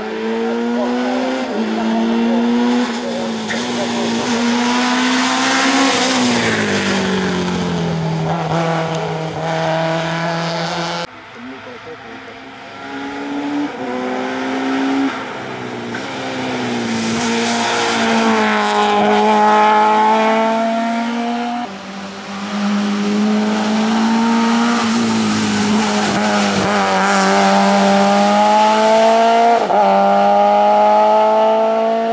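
Group A hill-climb hatchbacks at full throttle, engine pitch climbing then dropping back at each upshift. The sound breaks off twice, about a third and two thirds of the way through, each time picking up a new run, and is quieter for a couple of seconds after the first break.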